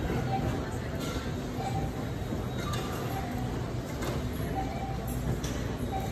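Wire shopping cart being pushed over a store floor, glass jars of pasta sauce clinking faintly against each other and the cart's metal, over steady store background noise with distant voices.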